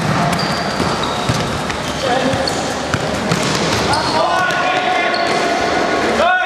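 Indoor football match play: players' voices shouting and calling, with the ball thudding off feet and the hard court floor now and then, and short high squeaks from shoes on the court. About four seconds in, one long held shout rises above the rest.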